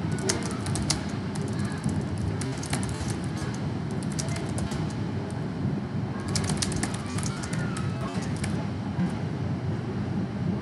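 Ballpark crowd ambience picked up by the broadcast microphone between pitches. A steady murmur runs under bursts of sharp clicks or claps, which gather near the start and again about six to eight seconds in.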